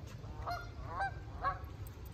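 Canada geese honking: three short honks about half a second apart, over a low steady rumble.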